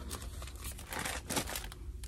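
Soft rustling and crinkling from something being handled, in a few short patches, over a low steady hum.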